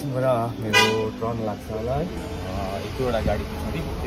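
A vehicle horn toots once, briefly, about a second in, over people talking in the street.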